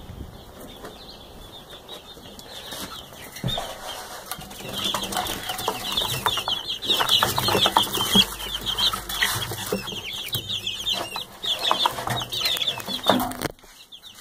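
A brood of young Barred Rock chicks peeping, many rapid high chirps overlapping, growing dense and loud from about four seconds in, with scattered knocks and rustling.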